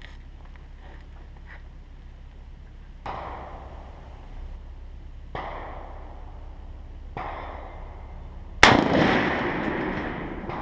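Four rifle shots. Three quieter reports from other firing points come about three, five and seven seconds in. Near the end comes a much louder crack from the M1 Garand's .30-06, its echo trailing off, followed about a second later by a brief high metallic ring.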